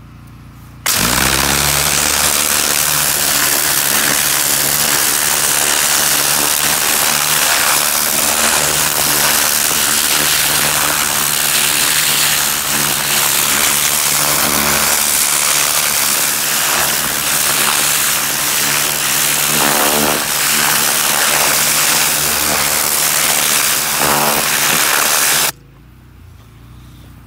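Pressure washer running, its wand's high-pressure water jet blasting into garden soil to tear out weeds: a steady loud hiss over the pump motor's hum, starting suddenly about a second in and cutting off near the end.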